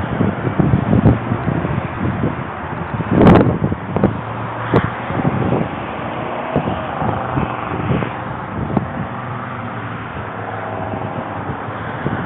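Rubbing and knocking handling noise from a camera carried by someone walking across a concrete lot, with a loud bump about three seconds in. A vehicle engine runs steadily in the background during the second half.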